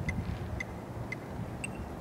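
Faint, evenly spaced high ticks, about two a second, over a low rumble.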